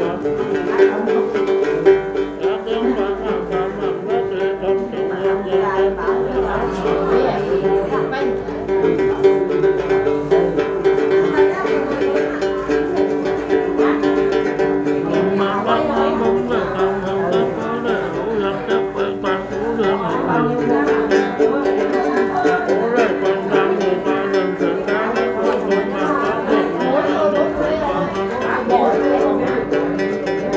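Đàn tính, the Tày long-necked gourd lute, plucked in a steady then accompaniment, with a man's voice singing along in the then style.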